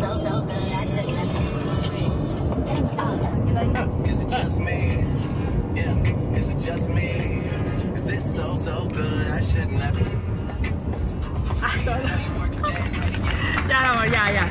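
Steady road and engine rumble inside a moving car's cabin, with music and a singing voice over it.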